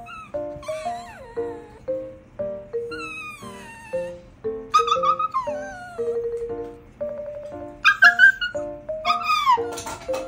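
A pet animal's cries, about five separate calls, each sliding down in pitch, over light background music of short plucked notes.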